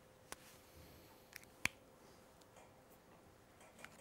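Near silence with a few short, sharp clicks, about four of them, the loudest about one and a half seconds in.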